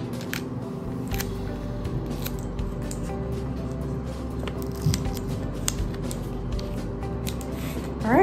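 Background music with steady held notes, under scattered small clicks and crinkles of adhesive tape being torn off and pressed onto a paper card.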